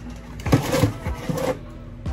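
Rustling and rattling of a cardboard perfume box being handled and put aside, a burst of about a second starting about half a second in.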